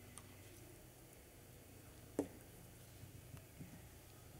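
Quiet room with a low steady hum and a few small plastic clicks and ticks as a small plastic paint pot is handled, the loudest a single sharp click about two seconds in.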